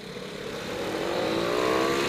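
Motorcycle engine accelerating hard, its pitch climbing steadily and getting louder through the gears of a single pull.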